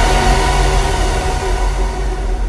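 The end of an electronic dance track: a sustained, noisy synth wash over a low bass tone, with no beat, slowly fading out.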